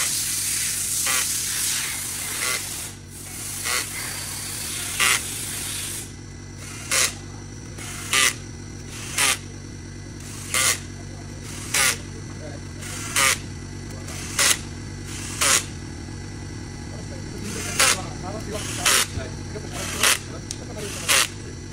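Cordless power driver running bolts into the camshaft bearing caps of a BMW N57 diesel cylinder head, in short bursts about once a second, one per bolt. A steady hiss is heard under the first six seconds and stops abruptly.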